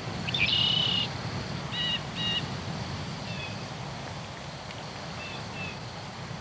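Small birds chirping in short, high calls over a steady outdoor background hum. The clearest calls come about half a second in and around two seconds, with softer ones later.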